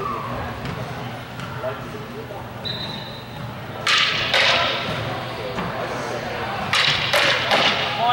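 Longswords clashing in two quick flurries of sharp strikes, the first about four seconds in and the second around seven seconds in.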